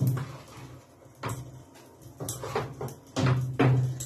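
A handful of short knocks and taps as a plastic scoop of flour is knocked against a mixing bowl and tipped into cake batter, the last few coming close together near the end.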